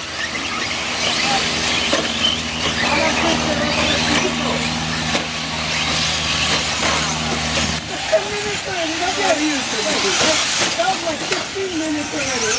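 Electric RC short-course trucks racing on a dirt track: a steady hiss of high motor whine and tyre noise. Under it runs a steady low hum that stops about eight seconds in, and voices come in over the last few seconds.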